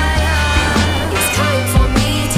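Pop song with deep bass notes and sharp drum hits, played loud.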